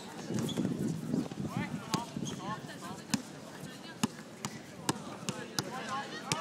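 A basketball being dribbled on an outdoor hard court, bouncing about once a second, with players' voices in the background.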